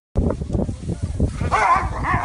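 An animal's cries, rising and falling, start about one and a half seconds in, over low knocking and rumbling.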